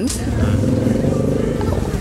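A vehicle engine passing on the street, its sound swelling about half a second in and easing off near the end.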